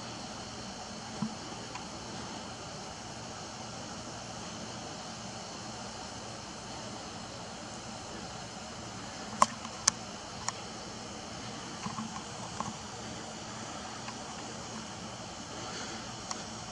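Faint, steady outdoor background hiss, broken by a few short sharp clicks of camera and tripod handling, the loudest two about halfway through.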